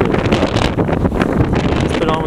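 Wind buffeting the camera's microphone, a loud, uneven rumbling noise.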